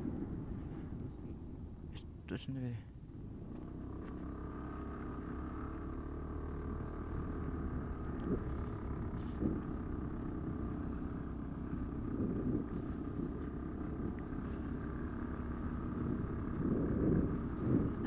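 Motor scooter engines running steadily, faint, with a short voice about two seconds in.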